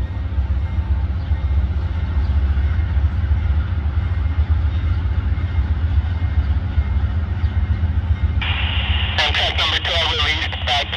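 Amtrak GE P42DC diesel locomotive running with a steady low rumble as it rolls slowly along the track. Near the end a railroad scanner radio opens with a burst of hiss and a voice begins to talk over it.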